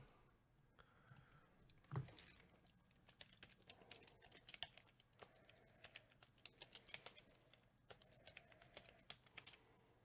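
Faint typing on a computer keyboard: quick, irregular key clicks, with one louder knock about two seconds in.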